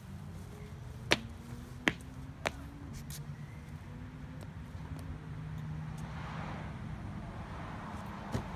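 Three sharp slaps of a child's shoes on a concrete picnic bench and table as he climbs up, between about one and two and a half seconds in, over a steady low rumble of road traffic; a car's tyre hiss swells near the end.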